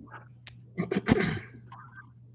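A person's sneeze-like burst of breath through nose and throat, picked up by an open conference microphone: two quick pulses about a second in, the second louder and longer.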